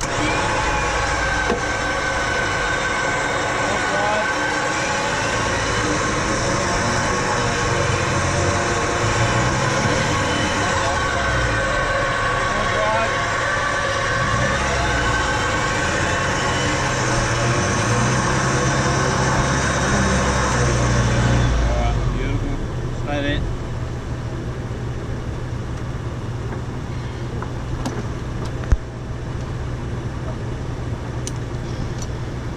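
4x4's electric winch motor running under load, a steady whine as it reels in the synthetic winch rope and drags a bogged car through soft sand. It stops about 22 seconds in, leaving a steadier, quieter engine hum and one sharp click near the end.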